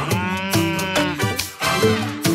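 A long, drawn-out cartoon cow "moo", about a second long and sinking slightly in pitch, over a children's song with a Latin-style beat. The music comes back in near the end.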